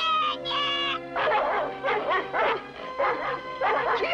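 Cartoon score music, with dogs barking in rapid, repeated yaps from about a second in while the music carries on.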